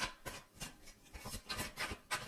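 A deck of tarot cards being shuffled by hand: a run of short, uneven rasping strokes.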